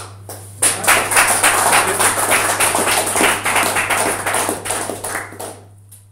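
Audience applauding: a burst of clapping that starts about half a second in, holds for about five seconds, then dies away near the end.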